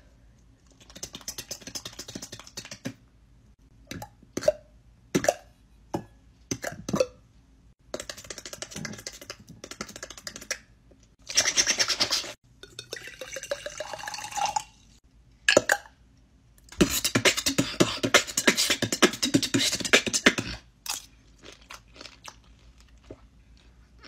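Close-up mouth sounds of someone eating: chewing, crunching and lip smacks in irregular bursts, with a long run of dense crunching in the second half.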